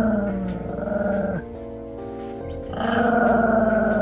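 A puppy growling, two long rough growls of about two seconds each, the second starting near the middle, each sagging in pitch as it ends, over steady background music.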